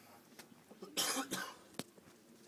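A person coughing, a short, harsh burst about a second in, followed by a sharp click near the end.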